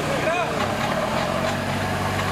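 Modified off-road 4x4's engine running steadily at low revs, with a voice calling out briefly near the start.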